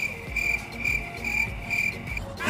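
Cricket-chirping sound effect: a shrill chirp pulsing about twice a second that starts and stops abruptly, the comic 'crickets' cue for an awkward silence. It plays over background music with a steady low beat.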